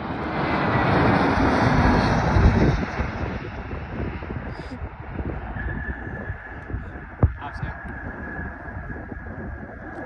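Turbofan engines of an American Airlines Airbus A320-family airliner landing close by: a loud jet rush that swells to its peak about two seconds in, then fades as the plane rolls away down the runway. A thin steady whine joins about halfway, and there is one sharp knock a little after seven seconds.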